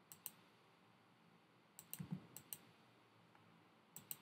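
Computer keyboard keystrokes: a couple of sharp clicks near the start, a quick run of about six around two seconds in, and two more near the end, over faint room hiss.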